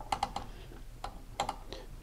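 A few light, sharp clicks with a low steady background: about three just after the start and three more about a second and a half in.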